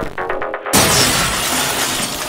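Electronic intro music, broken about two-thirds of a second in by a sudden loud glass-shattering sound effect that fades over the next second while the music carries on.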